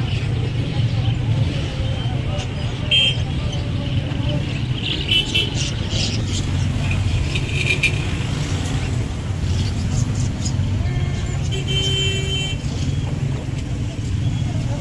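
Busy street-market din: a steady low rumble of traffic and voices, with several brief high-pitched sounds scattered over it, the longest lasting about a second near the end.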